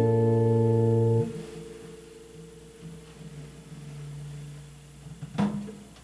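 Final chord of a white archtop hollow-body electric guitar ringing, then damped about a second in, leaving faint low string tones. Near the end there is a single sharp knock with a brief low ring after it.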